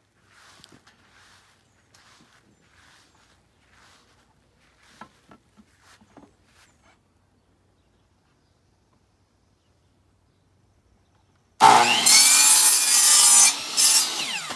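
A compound miter saw starts suddenly near the end and runs loud while cutting a piece of wood trim for about two seconds. It dips briefly, then surges again as the blade goes on through. Before it, faint scraping strokes come about every half second.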